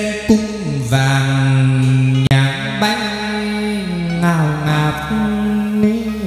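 Hát văn (chầu văn) ritual singing: a man's voice holds long notes and slides between them, over a đàn nguyệt moon lute, with a few sharp percussion strikes.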